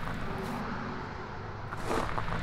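Quiet outdoor street ambience: a steady low rumble with faint distant traffic.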